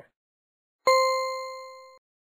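A single bell-like ding, struck suddenly just under a second in, ringing with a clear tone that fades steadily and then cuts off abruptly.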